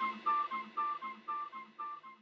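Outro music fading out: a short plucked-string figure repeating about four notes a second, growing steadily quieter.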